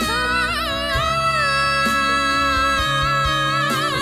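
A male voice holding a long, high sung note over a musical accompaniment; the pitch wavers near the start, then holds steady almost to the end.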